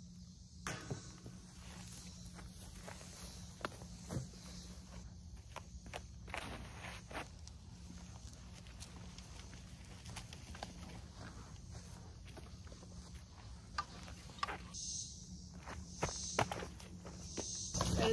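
Footsteps on dry grass and a concrete tee pad, with scattered light knocks, over a faint steady chorus of insects.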